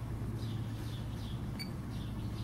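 A steady low electrical hum, with a short high beep or tick about one and a half seconds in.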